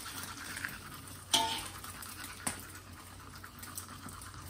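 Eggs frying faintly in a pan, with a metal utensil scraping against the pan once about a second in and tapping it once about two and a half seconds in.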